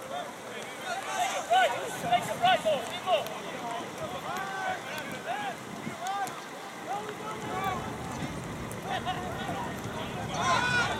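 Soccer players shouting and calling to each other across the pitch: short, distant calls from several voices, thickest in the first three seconds, over a steady background hiss.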